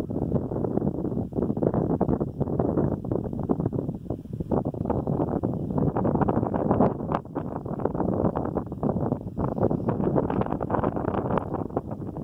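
Strong wind buffeting the microphone: a low, gusty rumble that keeps swelling and easing.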